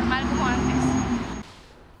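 City bus driving past close by, its engine and tyres running steadily with a thin high whine on top, then cutting off abruptly about one and a half seconds in.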